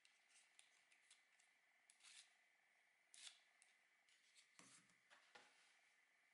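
Near silence. Faint clicks and a few brief scrapes come from a 3D-printed plastic foam board angle cutter being handled and adjusted on foam board, the loudest scrape a little after three seconds in, over a faint steady hum.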